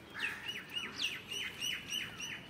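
A bird chirping outdoors: a rapid run of short, falling chirps, about four a second.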